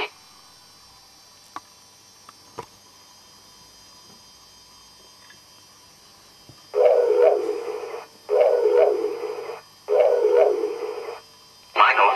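Home-built KITT voice box putting out three separate bursts of radio-like static through its speaker, each about a second long with short gaps between, after several seconds of faint hiss broken by a few soft clicks.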